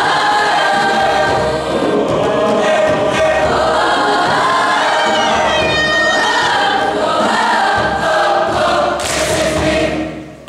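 Large mixed choir singing in full harmony, closing the song with a loud, noisy final accent in the last second before cutting off sharply at the end.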